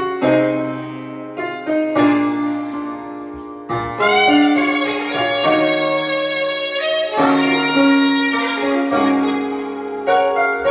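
Instrumental intro of a recorded pop-ballad backing track: sustained piano chords with strings, a new chord coming in every second or two.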